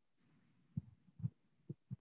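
Near silence, broken in the second half by four faint, short low thuds.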